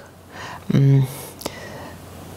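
A woman's voice in a pause between sentences: a breathy, half-whispered sound, then a short low hesitation syllable about three-quarters of a second in, and a small click, then only faint room noise.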